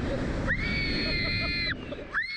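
A rider on a Slingshot reverse-bungee ride screams mid-flight: one long, high scream held from about half a second in until near the end. Under it is a steady rumble of wind rushing over the ride-mounted microphone.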